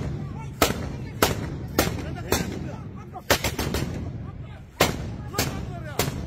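Machine gun mounted on a pickup truck firing single loud shots, roughly one every half second to a second, with a pause of about a second and a half in the middle.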